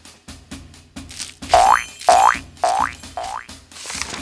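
Cartoon boing sound effects: four quick springy boings about half a second apart, each sliding up in pitch. They sit over light background music with short percussive ticks.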